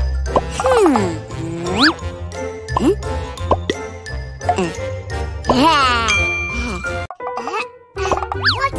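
Upbeat children's cartoon background music with a steady bass beat, overlaid with cartoon character vocal sounds that glide up and down in pitch and a jingling effect. The beat stops about seven seconds in.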